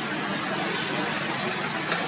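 Steady outdoor background noise with no distinct events, and one short click near the end.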